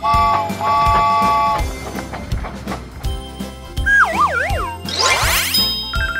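Children's background music with a steady beat. A cartoon train whistle sounds a three-note chord twice at the start. Later a wavering, falling whistle effect is followed near the end by a fast rising sweep.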